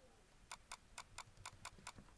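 Quiet clicking of a computer mouse scroll wheel turning notch by notch, a steady run of about seven clicks at roughly five a second starting about half a second in.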